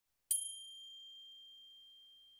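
A single high bell-like chime struck once about a third of a second in, ringing on one clear tone and slowly fading.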